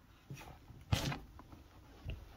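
Door of an Xbox Series X replica mini fridge being pulled open, with a single sharp click about a second in and a few light handling knocks around it.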